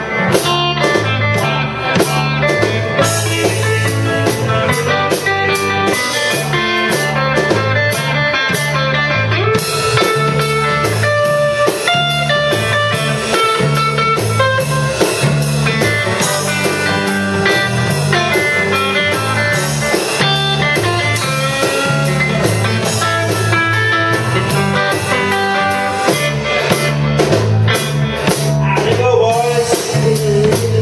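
A live blues band playing an instrumental stretch without vocals: electric guitar over a repeating electric bass line and a drum kit keeping a steady beat.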